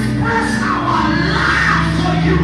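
Live band playing worship music: held keyboard chords over a steady bass and drums.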